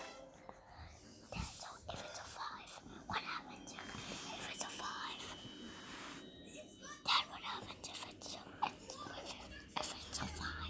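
Faint, indistinct low speech, like muttering or whispering, with scattered small clicks.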